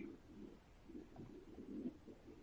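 Faint, irregular low murmur of line noise on an open telephone conference line, with no one speaking: the caller's line has been opened but is not coming through, a sign of a connection problem.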